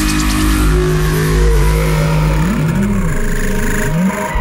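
Loud electronic dance music with a held bass synth note that, about two and a half seconds in, breaks into swooping up-and-down pitch sweeps, a dubstep-style wobble bass.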